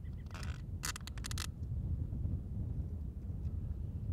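Rubber gas mask being pulled on and its head-harness straps tightened: a brief rustle, then a quick run of sharp clicks and scrapes about a second in. Low wind rumble on the microphone throughout.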